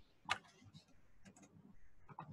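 Faint clicks of a computer keyboard and mouse as selected code is copied: one sharper click about a third of a second in, then a few softer ticks.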